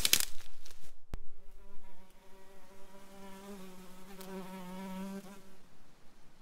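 A fly buzzing close by for about four seconds, a steady hum that wavers slightly in pitch, preceded by a sharp click about a second in.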